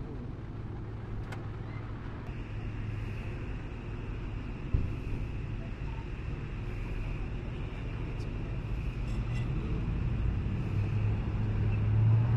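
Vehicle engines idling in the street with a steady low hum, with one sharp knock about five seconds in. Near the end the engine sound grows louder as another car pulls up.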